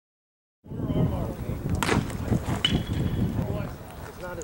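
Silence for the first half-second, then wind buffeting the microphone with faint voices behind it. A sharp crack sounds about two seconds in, and a shorter click follows under a second later.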